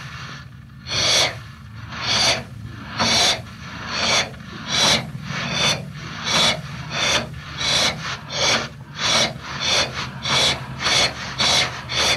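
Steam locomotive chuffing as it pulls away. Its exhaust beats quicken steadily from about one a second to about two a second as the train picks up speed, over a steady low rumble.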